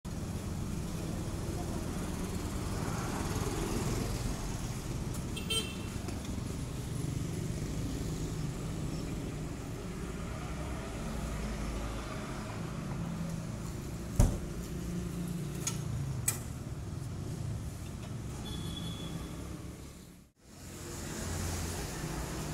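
Outdoor traffic noise with a steady low rumble of vehicles. A short high beep sounds about five seconds in, and a sharp knock about fourteen seconds in is the loudest moment. The sound drops out briefly near the end.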